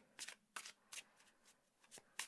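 Faint overhand shuffling of a Chrysalis Tarot card deck: a few soft card clicks in the first second, another near the end.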